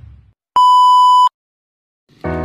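A single steady electronic beep, one clean high tone lasting under a second and cutting off sharply, with silence around it.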